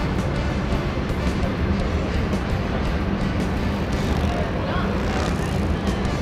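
Steady background din of motorcycle engines running, mixed with music and faint voices.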